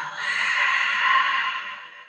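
A woman's long exhale out through the mouth, a steady breathy rush that fades away near the end: the out-breath of a deep yoga breathing exercise.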